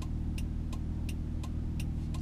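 Inside a 1997 car on the move: steady engine and road hum, with a turn-signal relay ticking evenly about three times a second.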